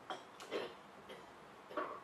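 A few faint, scattered clicks and knocks of things being handled on a meeting table, with one sharp click about half a second in.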